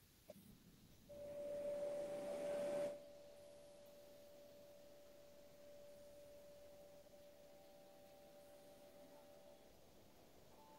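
A steady pure tone comes in about a second in and holds; a burst of hiss sits over it for its first two seconds.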